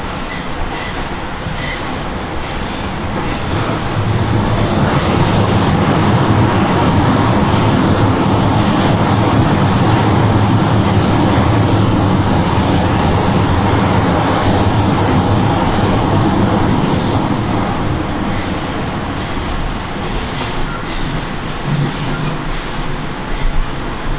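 Moscow metro train in motion, heard from inside the passenger car: a steady rumble of wheels on rail and running gear. It grows louder about four seconds in and eases off after about seventeen seconds, with a few sharp knocks near the end.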